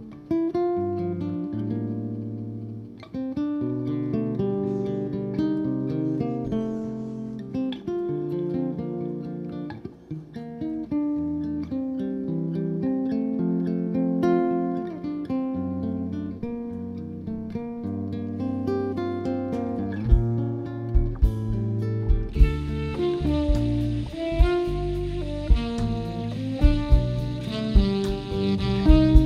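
Live instrumental jazz band: electric guitars play the opening chords and melody, one guitar covering the piano part. About twenty seconds in, the drum kit joins with kick-drum thumps and then cymbals, filling out the band sound.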